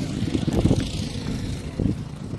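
Wind buffeting the microphone: an irregular, fluttering low rumble.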